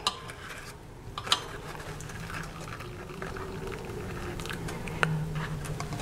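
Hot tea trickling from a small saucepan through a tea filter into a glass cup, with a few light clinks of the glass cup and saucer.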